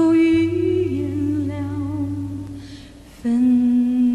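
A Mandarin pop song playing: a singer holds long notes with vibrato over a steady low bass, the music dipping in level near the three-second mark before a new held note comes in.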